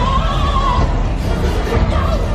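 Dark-ride show soundtrack playing music over a steady low rumble, with a high, wavering cry lasting under a second at the start.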